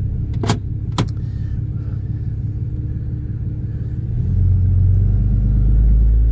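Ram pickup's straight-piped Cummins diesel idling, heard from inside the cab, with two sharp clicks about half a second apart near the start. A little past four seconds in, the engine's low rumble grows louder as the truck pulls away.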